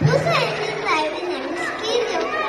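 Children's voices, talking and calling out over one another, with a steady low hum underneath.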